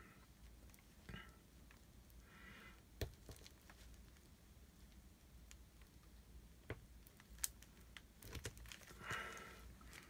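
Near silence, with a few faint clicks and soft rustles from black nitrile-gloved fingers working a rubber O-ring onto a small brass valve piston.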